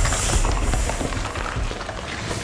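Film action-scene soundtrack: dramatic music mixed with a loud, dense rush of crashing noise that began just before and slowly fades over the two seconds.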